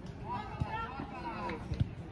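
Voices of children and adults calling out across an outdoor football pitch, several at once and at a distance, with a few short knocks in the second half.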